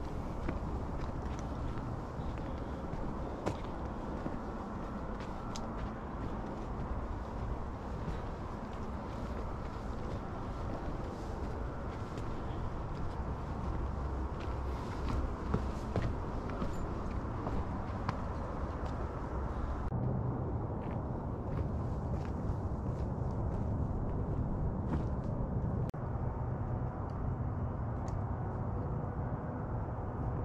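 Footsteps on a rocky dirt trail, with scattered short ticks of stones and gravel underfoot, over a steady low rumble. The higher hiss fades about two-thirds of the way through.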